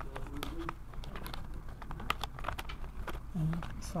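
Irregular small clicks and rustles of paper and card pieces being handled in a handmade altered-book journal, as a pull-out paper insert is fumbled one-handed to slide back in.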